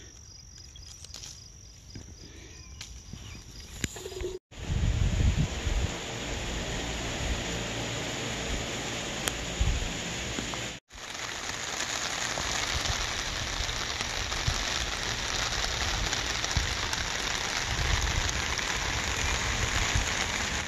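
Rain falling on a fabric canopy roof: a steady, dense hiss that sets in after a cut about four seconds in, with wind buffeting the microphone just after it starts and again near the end. Before it there is a quieter stretch with a faint, high, steady insect buzz.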